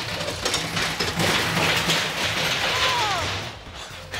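Roller coaster train rattling along its track, fading away near the end, with a brief falling squeal about three seconds in.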